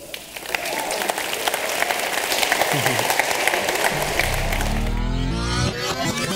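Audience applause, which swells just after the start and runs as a dense patter of claps. About four seconds in, a low-pitched music sting comes in over it.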